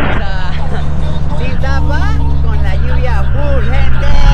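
A Polaris Slingshot's engine and road noise making a steady low rumble in the open cockpit while driving, with voices calling out and singing over it.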